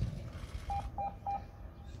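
Three short electronic beeps of the same pitch, about a third of a second apart, from the Course Navette beep-test recording: the signal that the next level is starting. A sharp click comes right at the start.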